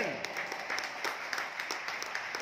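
Congregation applauding: many hands clapping unevenly together.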